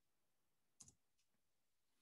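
Near silence, with one faint, short click a little under a second in.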